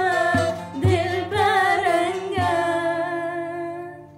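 Two female voices singing a melody together, with vibrato on long held notes, accompanied by strums of a long-necked saz (bağlama). The last note is held and fades away near the end.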